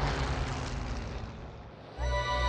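A rushing, rumbling noise effect that fades away steadily over about two seconds, ending just before the music and narration come back in.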